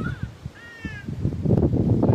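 An animal call, heard twice: a brief one at the start and a longer one about half a second in, each falling slightly in pitch, over a low rumbling noise.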